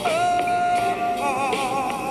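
A song with one long held sung note over its backing music, broadcast by an adult contemporary FM station and picked up on a portable TEF6686 radio receiver.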